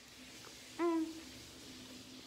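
A woman's short closed-mouth "mm" hum while chewing a mouthful of bread, once, a little under a second in. A faint steady background hum runs underneath.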